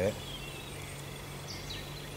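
A few faint, high bird chirps over a steady low background hum outdoors, with short downward-gliding notes a little past the middle.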